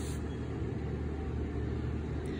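Steady low background rumble and hum, with no distinct events.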